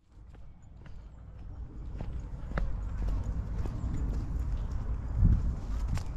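Footsteps moving along a dirt woodland trail, with dry leaves and twigs crackling irregularly underfoot over a low rumble. The sound fades in over the first two seconds, and there is a louder low thump about five seconds in.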